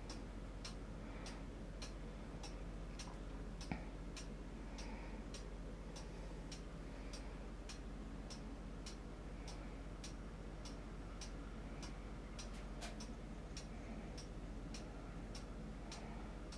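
Faint, steady ticking, about two ticks a second, over a low hum, with one soft knock about four seconds in.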